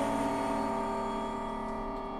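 Contemporary classical chamber ensemble music: a cluster of held tones dying away slowly, growing steadily quieter.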